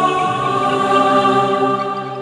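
UVI Digital Synsations DS1 software synthesizer playing its "Majesty" preset: a sustained pad chord. The chord changes just after the start and begins to fade near the end.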